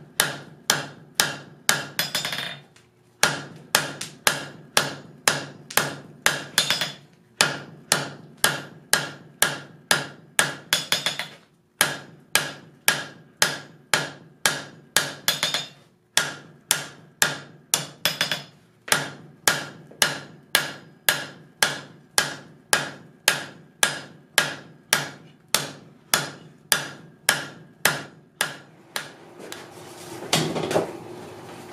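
Hand hammer striking a hot steel bar on the anvil horn, about three blows a second in runs with short breaks, each blow ringing. The bar is being drawn out and rounded on the horn.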